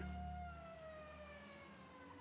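Faint siren-like tone with overtones, gliding slowly down in pitch as it fades away.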